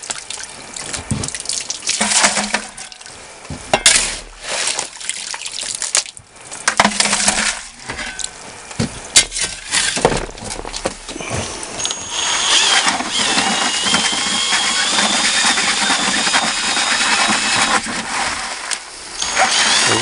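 Irregular scrapes and clatters as gravel is shovelled into a bucket of water. From about twelve seconds in, a 12-volt cordless drill runs steadily with a faint rising whine, spinning the bucket classifier and churning the gravel and water.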